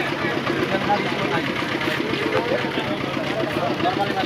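Busy market crowd: many voices chattering at once over a steady low hum, with no single sound standing out.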